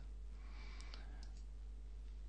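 A couple of faint computer mouse clicks about a second in, over a steady low electrical hum and room noise.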